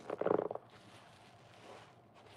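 A soap-soaked yellow sponge squeezed in gloved hands, giving one short, wet, bubbly squelch in the first half-second as the suds are pressed out.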